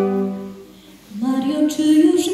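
Wind band's held chord dies away about half a second in; after a brief pause the band comes in again with a singing voice, the tune rising at the entry.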